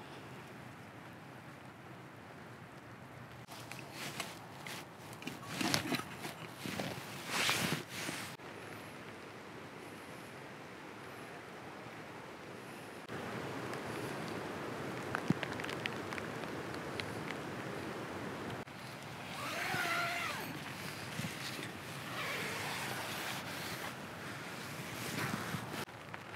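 Steady wind blowing through woodland, with a few louder bursts of rustling about four to eight seconds in.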